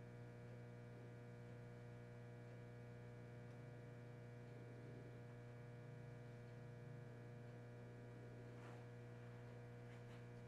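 Near silence: a steady low electrical mains hum, with one or two faint light scrapes near the end.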